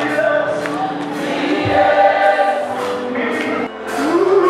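A church congregation singing a gospel worship song together, with accompanying music. The level dips briefly just before the end.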